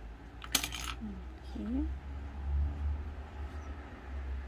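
A short clatter of hard plastic on a table about half a second in, a yellow plastic modelling tool being set down, over a low steady hum.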